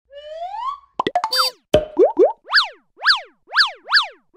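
Cartoon-style sound effects from a channel logo sting: a rising whistle-like glide, then a quick run of clicks and pops, then a string of springy up-and-down chirps about two a second.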